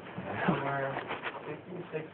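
A person's voice: low, indistinct murmuring speech, with a drawn-out part about half a second in and short scraps after.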